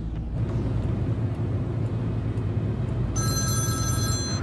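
Car engine and road noise running steadily. About three seconds in, a mobile phone starts ringing with an electronic ringtone of several steady tones.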